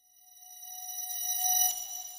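Electronic logo sting: a chord of several steady synthesized tones that swells up out of silence and is loudest near the end.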